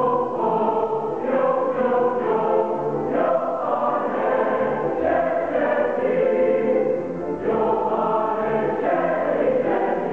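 Mixed-voice teenage choir singing in harmony in sustained phrases, with a brief break about seven seconds in before the next phrase begins.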